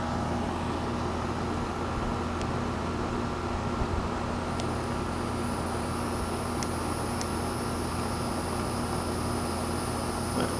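Outdoor air-conditioning unit running with a steady hum and fan drone. A thin, high steady tone joins about halfway through.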